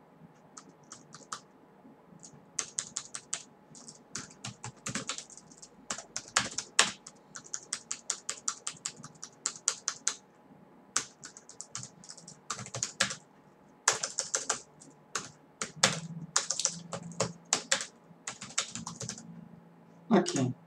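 Typing on a computer keyboard: irregular runs of quick keystrokes broken by short pauses.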